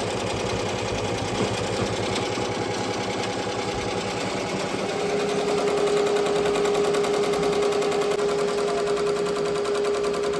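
Ricoma multi-needle commercial embroidery machine stitching at speed: a fast, steady rattle of needle strokes. About halfway through, a steady hum joins the rattle.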